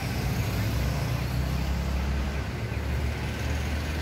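City street traffic: motor vehicles running close by, a steady low engine rumble under a general traffic hiss.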